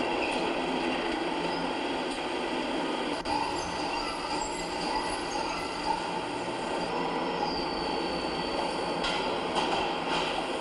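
Brick-factory machinery running steadily, a dense mechanical clatter and rumble, with a thin high squeal for a second or two near the end.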